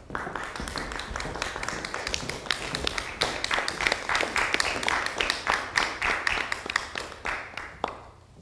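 Audience applauding: dense clapping that starts suddenly and dies away just before the end.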